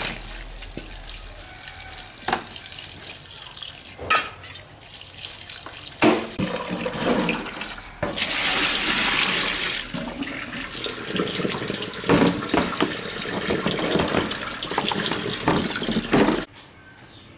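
Tap water running into a stainless steel sink while chicken feet are rinsed in a plastic colander, with splashing and a few sharp knocks as they are handled. A louder rush of water comes about eight seconds in.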